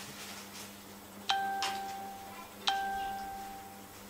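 Two bell-like chimes of the same pitch, about a second and a half apart, each starting sharply and ringing away over about a second.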